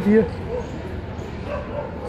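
A man's last word ends, then steady city street traffic noise with a few faint, short pitched calls in the background, about half a second in and again about one and a half seconds in.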